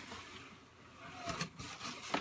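Faint scraping and rustling of a large cardboard box's flaps being pulled open, a little louder in the second half.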